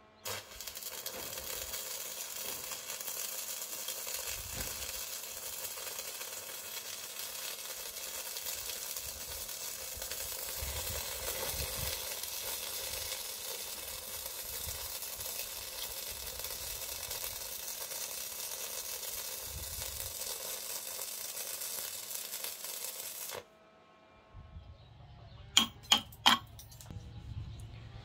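Stick (MMA) arc welding with a 2.5 mm Chem-Weld 7000 rutile electrode: the arc strikes right away and runs a butt weld with a steady crackle, cutting off suddenly about 23 seconds in. A couple of seconds later come three sharp metal taps, the loudest sounds here.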